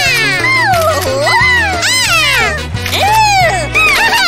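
Background music with a stepping bass line, over a run of high-pitched wordless cartoon voice sounds, squeals and exclamations that glide up and down in pitch one after another.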